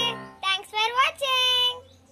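A child's voice singing in short held notes over background music, fading out near the end.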